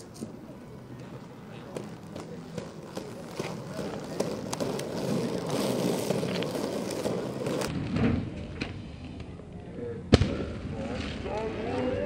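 Inline skate wheels rolling on asphalt under outdoor voices and chatter, with scattered small clicks and one sharp loud knock about ten seconds in.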